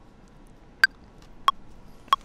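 Ableton Live's metronome counting in at about 93 BPM before a vocal take is recorded: a higher-pitched accented click on the downbeat about a second in, then a lower click one beat later.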